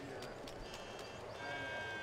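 Faint background ambience with a few soft clicks and held high-pitched tones: a faint one from about a third in, then a longer, steady one with overtones from about two-thirds in.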